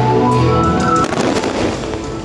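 Aerial fireworks bursting and crackling, with a cluster of sharp pops about a second in, over sustained show music.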